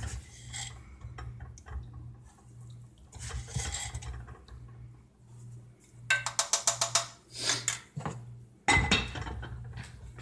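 Sugar being scooped with a measuring cup and poured into a small saucepan of hot water. About six seconds in comes a quick even run of light clinks against the pan, and near the end one heavier knock of the pan or cup.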